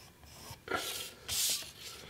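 Two short rubbing strokes across sketch paper, one just past halfway and one near the end, from work on a pencil graffiti sketch.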